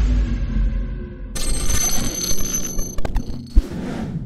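Electronic intro sound effects: a deep low boom fades out, then about a second and a half in a bright, ringing shimmer with several steady high tones comes in, broken near the end by a few sharp clicks and a thump.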